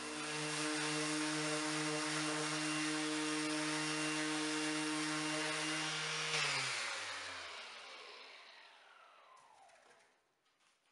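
Makita 18V cordless random orbital sander running steadily while sanding a wood slice, then switched off a little over six seconds in, its motor winding down with a falling whine that fades over the next couple of seconds.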